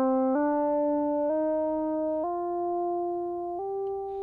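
A synthesizer tone that is gliding smoothly upward is forced by Auto-Tune pitch correction onto the notes of a C minor scale, so it climbs in four distinct steps instead of sliding. It steps through C, D, E-flat, F and G, with each note held for about a second.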